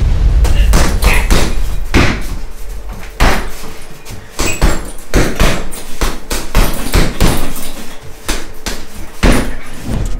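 Punches and kicks landing on a hanging CIMAC heavy punch bag: an uneven flurry of loud thuds and slaps, a couple of blows a second.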